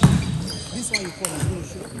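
Table tennis rally: a loud hit right at the start, then a few sharp clicks about a second in as the ball is struck by the bats and bounces on the table.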